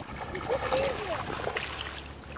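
A dog pawing and digging in shallow water, making splashing, with a few short high vocal sounds that glide in pitch about half a second to a second in.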